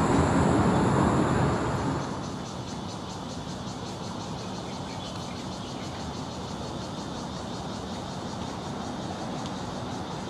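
Steady background noise of distant traffic, louder in the first two seconds and dropping to a lower, even level after that.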